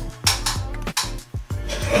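Background music with several sharp clicks and clinks spread through it.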